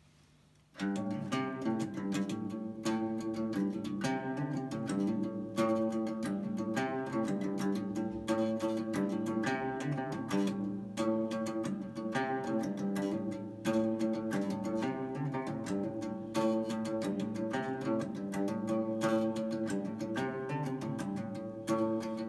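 Gretsch electric guitar strummed in chords, starting suddenly about a second in and carrying on as a steady strummed chord pattern.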